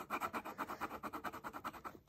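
Pen scribbling on paper while colouring in: quick, even back-and-forth strokes, about ten a second.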